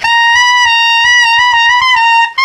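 Tenor saxophone holding one loud, high altissimo note, a C sharp played with an overtone fingering (high F key plus D key). The pitch wavers slightly up and down.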